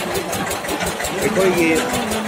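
Borewell drilling rig's engine running steadily with a rapid, even beat of about ten pulses a second.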